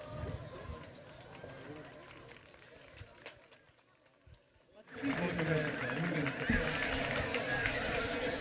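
Faint murmur of low voices and shuffling in a hall, dropping out almost to silence for about two seconds. It comes back abruptly about five seconds in.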